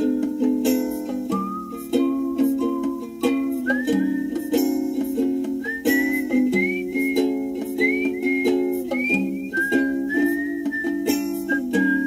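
A 1990s pop song playing from a cassette in a car's tape deck, heard through the car speakers: a whistled melody over plucked-string chords, with no singing.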